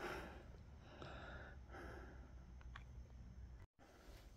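Near silence: faint background noise with a few soft, short patches of noise. The sound drops out completely for a moment near the end.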